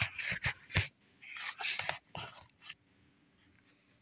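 Handling noises as a slice of bread is laid on top of another in a plastic dish: several short soft knocks and clicks with a couple of brief scraping rustles, dying away about three seconds in.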